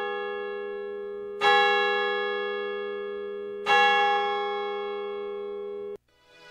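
A church bell tolling slowly, struck twice about two seconds apart, each stroke ringing out and fading, until the sound cuts off abruptly at the end.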